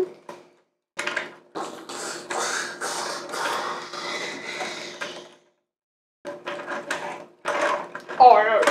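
Plastic joints and parts of an Optimus Prime Voyager Class action figure clicking and rattling as it is handled and transformed. The clicks come in a few bursts of quick small clicks with short gaps between.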